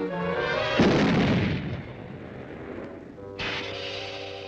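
Cartoon explosion sound effect: a single loud blast about a second in that dies away over roughly a second, over cartoon background music.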